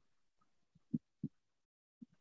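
Two soft, low thumps about a third of a second apart, about a second in, over near silence.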